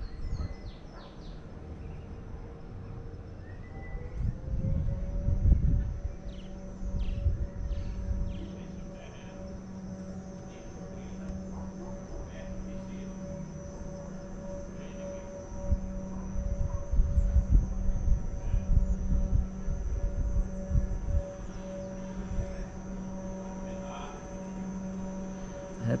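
Steady machinery hum from the cable car's top station as the chair approaches it, pulsing low with a higher tone that steps up in pitch about four seconds in. Irregular low rumbles of wind on the microphone come and go, and a few brief bird chirps sound in the first half.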